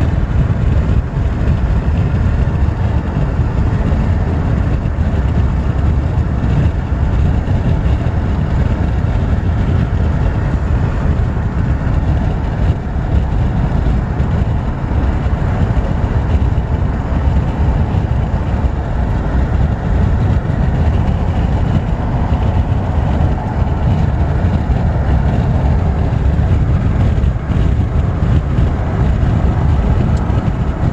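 Steady road noise heard inside a moving car: a continuous low rumble of tyres and engine that stays even throughout.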